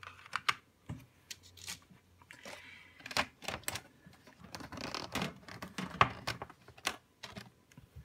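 Wooden coloured pencils and plastic pencil trays being handled in a metal tin: a run of irregular light clicks and clatter.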